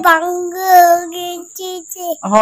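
A toddler's sing-song voice holding one long steady note for about a second and a half, then a short note near the end.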